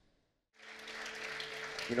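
Audience applause that comes in about half a second in, after a moment of dead silence, with a steady low hum beneath it.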